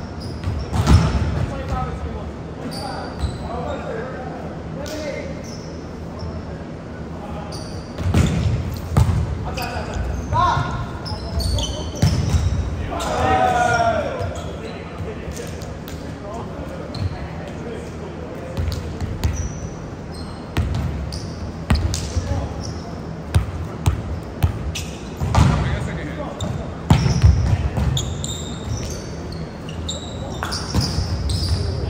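Indoor volleyball game on a hardwood gym floor: the ball being hit and thudding, with short high sneaker squeaks and players' voices and shouts, all echoing in the large hall.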